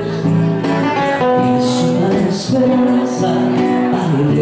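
Live band music led by strummed acoustic guitar.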